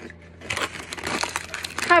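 A foil chip bag crinkling as it is handled, starting about half a second in and running on as a dense irregular crackle until speech begins near the end.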